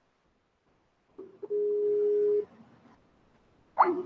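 A steady electronic beep at one pitch, lasting about a second and coming just after a short blip. A voice starts right at the end.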